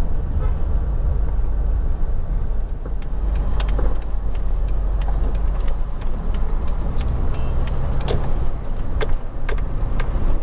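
A car being driven, heard from inside the cabin: a steady low rumble of engine and road noise. A few short sharp clicks come a few seconds in and again near the end.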